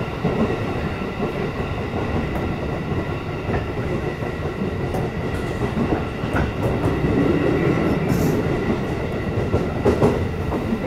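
Running noise of an electric passenger train heard from inside the carriage: a steady rumble of wheels on rails, with occasional clicks over rail joints and a faint high steady whine.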